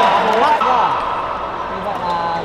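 Chatter of many voices in an indoor badminton hall between rallies, with no shuttle strikes.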